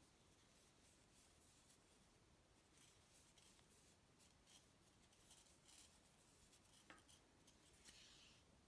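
Near silence with faint soft ticks and rustles of a crochet hook drawing yarn through stitches, and one slightly clearer click near the end.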